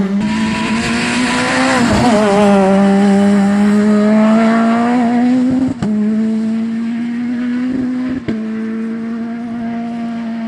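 Rally car engine held at high revs flat out, its note climbing slowly, with two short breaks about six and eight seconds in where the pitch drops back.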